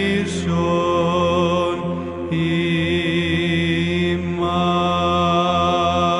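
Greek Orthodox Byzantine chant: a voice sings long, drawn-out melismatic notes that change pitch a few times, over a steady low drone.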